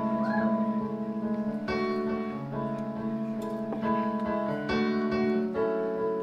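A live band's slow song intro: sustained keyboard chords that change every second or so over a held bass note, before the vocals come in.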